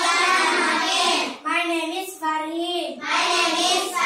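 A class of young children reciting in chorus, many voices in a drawn-out sing-song unison, in about three long phrases.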